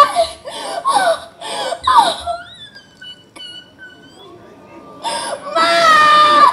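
A woman sobbing and wailing in loud bursts, several cries sliding downward in pitch, then a quieter stretch before the loud voice returns near the end.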